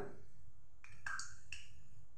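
Three or four short, light clicks from hands handling a bread roll at a steel plate, over a low steady hum.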